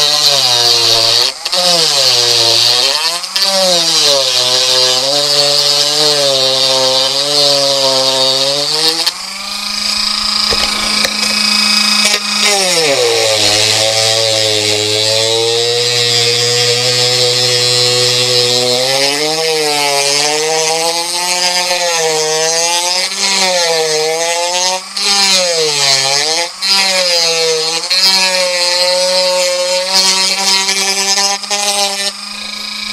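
Dremel rotary tool with a small grinding bit cutting through a fiberglass cowling. The motor's whine dips in pitch and recovers every second or two as the bit bites into the fiberglass, with a grinding hiss above it. About nine seconds in, it runs freely at a steady higher pitch for about three seconds.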